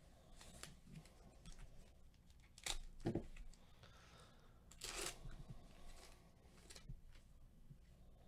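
Faint tearing and rustling of the shiny foil wrapper of a 2020 Panini Donruss Diamond Kings card pack as it is ripped open. There are two short rips, about three and five seconds in, with a soft low thump just after the first.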